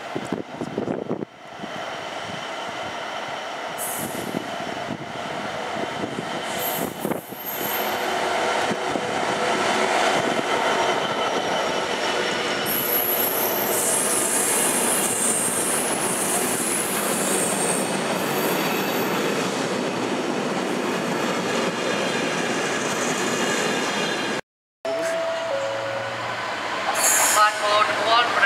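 A container freight train passing at speed: a long, continuous rumble of wagons over the rails, with high squealing tones from the wheels through the middle of the pass. After a short break, a second freight train hauled by a diesel locomotive is heard approaching.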